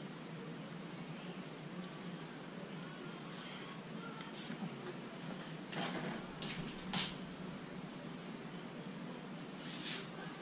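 Quiet room tone: a steady low hum, with a few brief soft noises around the middle, the loudest about seven seconds in.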